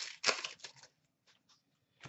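Stiff trading cards handled by hand as a stack is flipped through: a few short papery scrapes and clicks in the first second, then it goes quiet.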